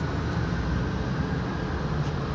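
Steady low rumble of city street background noise, with no distinct events standing out.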